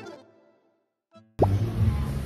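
Background music ending on a fading chord, then about a second of silence broken by one short note. Near the end it cuts suddenly to live room noise with a low hum.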